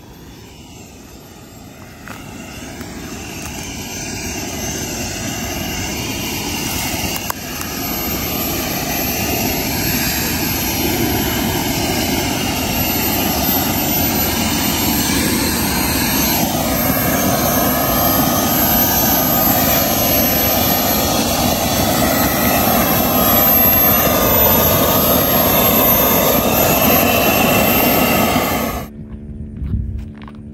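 Model jet turbine engine of a crashed RC Yak-130, still running after the crash: a steady rushing roar with a high whine and wavering tones, growing steadily louder. It cuts off suddenly near the end.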